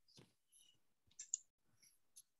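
Near silence broken by a few faint clicks of a computer mouse, two close together a little after a second in, as a screen share is started.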